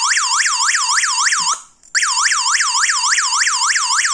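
Built-in siren of a Digoo HAMB PG-107 alarm base sounding a loud, fast warbling wail, about five sweeps a second. It is the panic alarm set off by the SOS button on the key-fob remote. It breaks off briefly about one and a half seconds in, resumes, and stops at the end.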